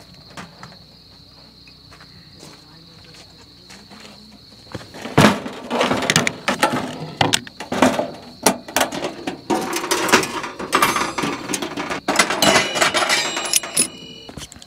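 A steady high insect trill for the first five seconds, then loud clacks, clicks and metal knocks from about five seconds in as a Coleman two-burner propane camp stove is unlatched and its metal lid and side wind panels are swung open on a wooden table.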